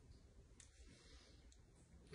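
Near silence: faint room tone with a few soft clicks, the clearest a little over halfway through.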